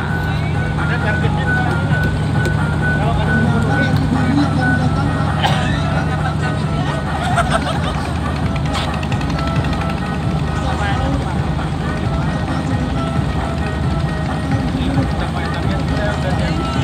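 Klotok river boat's engine running with a steady low hum that changes note about halfway through, with music playing over a loudspeaker and people's voices on top.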